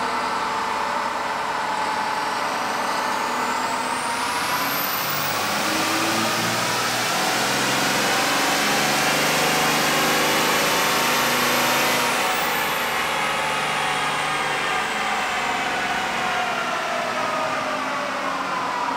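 Compound-turbocharged Cummins diesel in a Dodge Ram 2500 Mega Cab making a pull on a chassis dyno. The engine note climbs steadily for about ten seconds, with a high turbo whine rising with it until it is out of hearing. Both then wind back down over the last several seconds as the pull ends.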